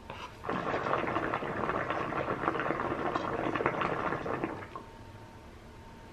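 Hookah water bubbling steadily for about four seconds as smoke is drawn through the hose, then stopping.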